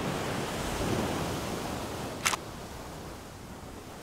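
Sea surf breaking and washing over coastal rocks, with wind on the microphone, as a steady rushing noise. A single sharp click about two seconds in, after which the surf sounds quieter.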